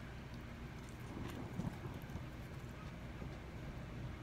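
Faint chewing of a bite of fried chicken sandwich, with a few soft mouth clicks about a second and a half in.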